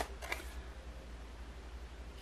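Tarot card drawn from the deck and turned over, a soft tick and faint papery handling in the first half-second. After that, quiet room tone with a low steady hum.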